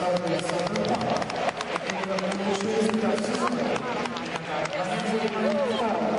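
Arena audience applauding and cheering, with hand claps close by, in reaction to a figure skater's score being shown.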